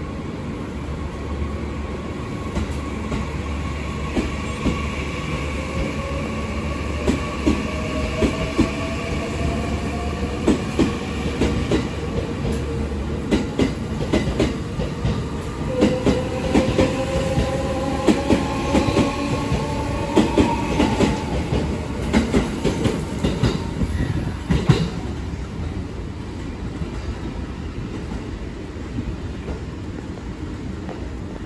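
JR Central 315 series electric train pulling away, its VVVF inverter and traction motors whining in several tones that rise slowly in pitch as it gathers speed. Its wheels clack over the rail joints more and more often, then the sound dies away near the end as the last car leaves.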